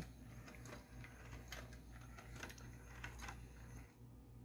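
Small 3D-printed four-legged walking toy driven by an N20 gear motor, walking on a tabletop: faint, irregular light plastic clicks and taps from its gears and feet.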